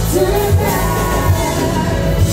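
Live rock band playing: a vocalist sings a melody over electric guitar and a steady drum beat, with bar crowd noise underneath.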